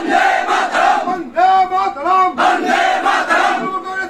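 Crowd of protesters chanting a slogan in unison, the same short phrase shouted over and over in a steady rhythm.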